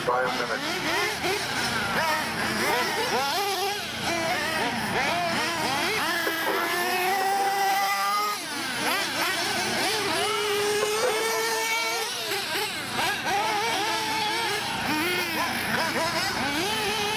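Several small nitro two-stroke engines of 1/8-scale RC buggies running at high revs, their overlapping pitches rising and falling continually as the cars accelerate and brake around the track.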